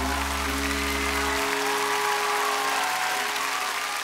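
Audience applauding over the band's final held chord; the chord's low notes stop about a second and a half in while the clapping goes on.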